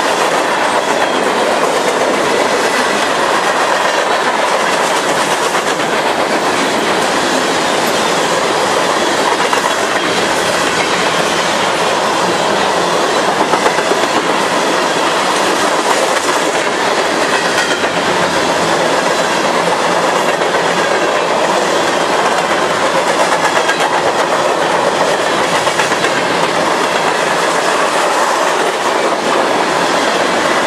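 Freight cars rolling past close by, their steel wheels running on the rails in a loud, steady noise that holds for the whole stretch.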